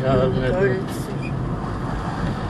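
Steady low engine and road noise inside a moving car's cabin, with a voice talking briefly at the start.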